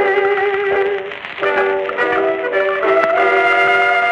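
A 1920s jazz band on an acoustic-era blues record, playing the instrumental closing bars with no vocal. Held chords give way to a brief dip about a second in, then moving notes, and a final chord is sustained near the end.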